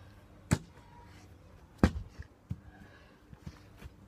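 A bottle being bashed against concrete to burst it open: two hard impacts about a second and a half apart, then a few lighter knocks. The bottle holds, only holed and not popping.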